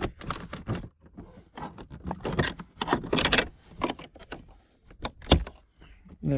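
Plastic interior door trim of a Porsche Panamera being pried with a screwdriver: irregular clicks, scrapes and rattles, with a sharp snap about five seconds in as the handle cover pops free of its clips.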